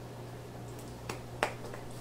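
Steady low electrical hum and faint hiss on an open phone line, with two small clicks a little over a second in.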